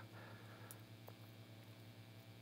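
Near silence: a faint steady hum under room tone, with a couple of faint ticks.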